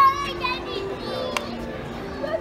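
Young children's voices and chatter, a high-pitched child's call ending right at the start, over background music, with a single sharp click about two-thirds of the way through.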